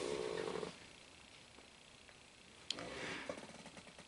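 Cardboard laserdisc jackets being handled: a short rough scrape as one jacket slides over the stack, then a sharp click a little before the end followed by faint rustling.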